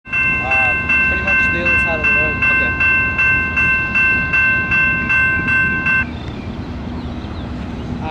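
Railroad grade-crossing warning bell ringing rapidly, about two and a half strikes a second, and cutting off suddenly about six seconds in. A steady low rumble runs underneath.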